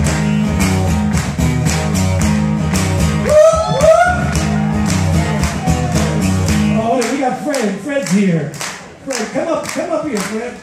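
Live acoustic blues jam with guitar and a sung vocal, the audience clapping along in time about twice a second. About seven seconds in the band's low end drops out, leaving the rhythmic clapping and voices singing.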